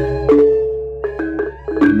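Balinese gong gamelan playing a slow lelambatan piece: bronze-keyed metallophones struck with mallets, their notes ringing on. A deep pulsing low tone stops about a third of a second in, the ringing dies away to a lull, and a fresh set of strikes comes in near the end.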